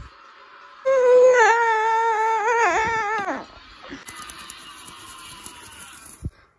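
A high voice screaming: one long, wavering cry starting about a second in and dropping in pitch as it ends after about two and a half seconds, followed by a faint lingering tone.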